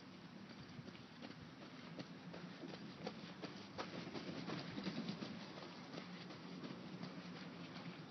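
Footsteps of people running past: a quick patter of strides that grows louder about three seconds in and fades after about five seconds.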